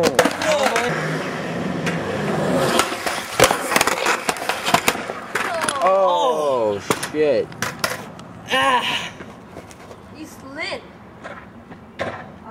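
Skateboard wheels rolling on concrete, then a series of sharp clacks and slams as the board hits the ground in a bail. Several short shouts come in the middle and again near the end.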